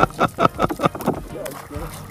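A person talking in short bursts, the words not made out.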